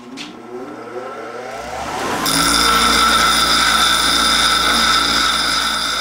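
Bench grinder motor spinning up after switch-on, its whine rising in pitch over the first two seconds. About two seconds in, a mild-steel workpiece is pressed against the abrasive wheel, and a loud, steady grinding noise with a high ringing tone runs to the end.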